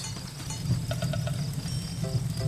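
Nighttime ambience in an animated film's soundtrack: short, evenly repeated cricket chirps starting about a second in, over a low steady rumble.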